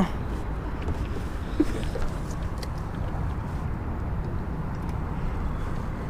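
Steady low rumbling noise of wind on the microphone and water moving around a small boat, with a few faint clicks.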